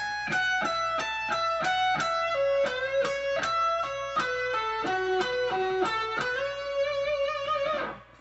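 Electric guitar playing a fast lead run of single picked notes, about four a second, mostly stepping down in pitch. It ends on a long held note with vibrato that stops just before the end.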